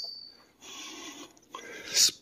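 A soft rubbing, scuffing noise lasting about a second, with a shorter one just after.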